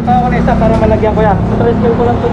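Steady low engine hum of motorcycle and scooter traffic on the street, with voices talking over it.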